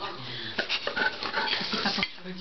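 Large long-haired dog whining close up.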